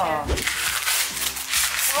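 Wrapping paper crinkling and rustling as a present is unwrapped by hand, after a brief laugh at the start.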